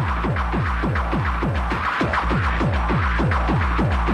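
Hard techno (hardtek) music: a fast, steady kick drum, each hit falling in pitch, about four hits a second, under a dense noisy layer of percussion.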